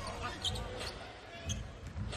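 A basketball dribbled on the court, with a couple of bounces about a second apart over the arena's background noise.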